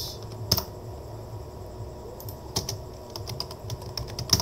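Typing on a computer keyboard: sparse, irregular keystrokes, one about half a second in and a short run of quick taps later on.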